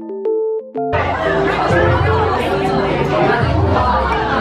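Soft electric-piano background music; about a second in, busy café chatter from many voices comes in, with the music carrying on underneath.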